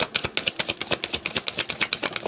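A deck of tarot cards being shuffled by hand, the cards clicking against each other in a fast, crisp run of about fifteen clicks a second.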